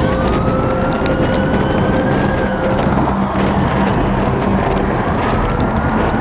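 A siren wailing over a loud, dense wash of noise: its pitch rises slowly, then falls about two seconds in. A second rise begins near the end, and a steady tone sits underneath.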